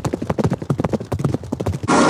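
Radio-play sound effect of quick steps clattering on a hard surface, a fast irregular run of sharp knocks as the characters hurry off, cut off abruptly near the end.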